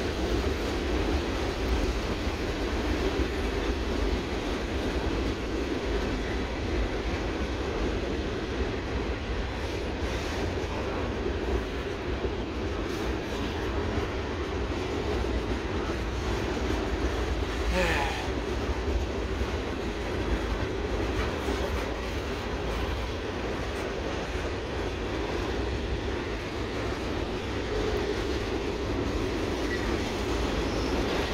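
Covered hopper cars of a freight train rolling across a steel deck trestle: a steady rumble and rattle of wheels on the bridge, with a brief squeal about halfway through.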